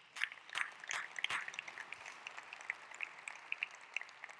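Scattered applause, heard faintly: several clearer claps in the first second and a half, then thinning to a few light claps.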